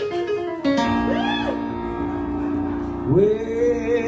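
A man singing live to his own electric keyboard accompaniment: a sustained chord comes in just under a second in with a short sung phrase sliding up and back down, then a held note swoops up and is sustained near the end.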